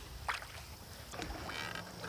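Quiet water sound of a canoe paddle stroke: a wooden otter-tail paddle drawn through river water, with a couple of light ticks.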